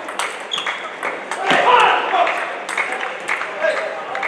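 Table tennis rally: a quick series of sharp clicks as the celluloid-type ball strikes the bats and the table. A voice is heard over it, loudest about a second and a half in.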